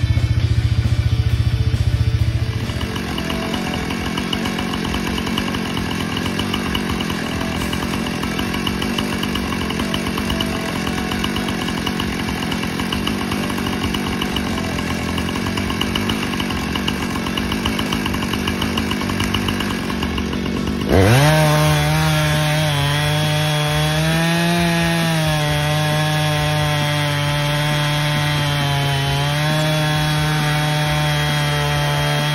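Chainsaw in a homemade Alaskan chainsaw mill ripping a log lengthwise, running steadily under load. About 21 seconds in the saw suddenly gets louder, and its engine note wavers up and down as the load on the cut changes.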